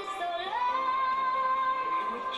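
A woman singing over instrumental backing, her voice gliding up about half a second in to one long held high note.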